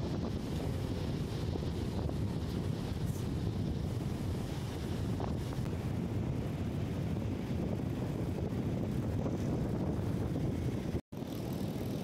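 Wind buffeting the phone's microphone: a steady, uneven rumble that briefly cuts out about a second before the end.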